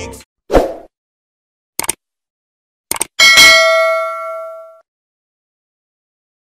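Subscribe-button animation sound effects: a short thump, two quick double clicks like a mouse clicking, then a bright bell ding that rings out for about a second and a half.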